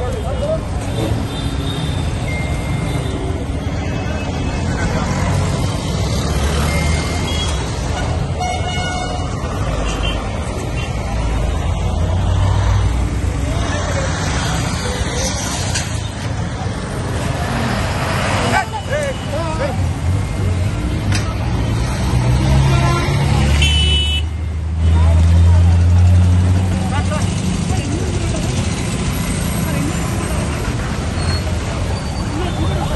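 Street traffic: motor vehicle engines running with horns honking, and people's voices. About three-quarters of the way through a horn sounds briefly, followed by a louder low engine rumble.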